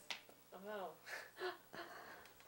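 An elderly woman's quiet, breathy laughter in a few short voiced bits, after a brief click near the start.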